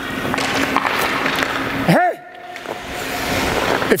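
Hockey skates scraping and gliding on rink ice in a skating stride, swelling over the first second and again toward the end. A short call from a person cuts in about halfway through, over a steady low hum.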